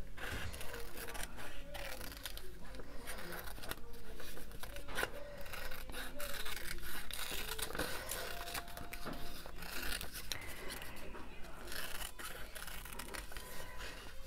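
Small craft scissors snipping paper in many short, irregular cuts, fussy-cutting around a printed leaf and flower.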